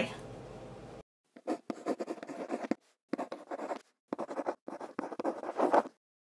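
Pen-on-paper writing sound effect: runs of quick scratchy pen strokes in three bursts with short pauses between, as a handwritten signature is drawn, stopping abruptly near the end.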